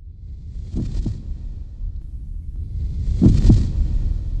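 Heartbeat sound effect: two lub-dub double thumps, about two and a half seconds apart, over a low rumbling drone that grows steadily louder.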